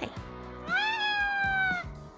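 A house cat meowing once, a single call of about a second that rises in pitch and then slowly falls away, over background music.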